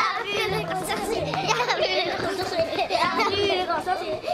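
A group of children's voices chattering and calling out over one another as they play together.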